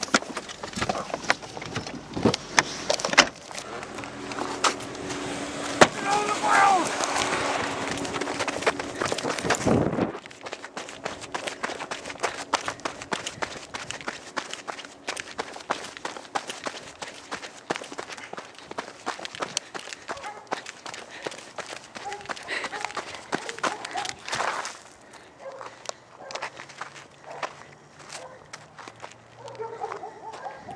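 Footsteps walking and running over dry dirt and brush, a long run of quick crunching steps with the handheld camera jolting. There is a louder, more mixed stretch of noise and an indistinct voice through the first ten seconds.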